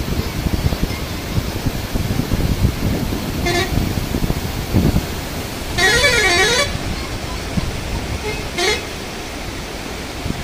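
Floodwater rushing over a river ford, with a vehicle horn sounding three times: briefly about three and a half seconds in, longer with a wavering pitch around six seconds, and briefly again near nine seconds.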